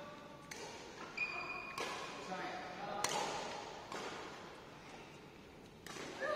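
Badminton rackets striking a shuttlecock: four sharp, separate hits spread over the few seconds, each ringing briefly in a large echoing hall. Short bits of players' voices fall between the hits.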